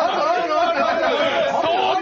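Speech only: a man talking in Japanese.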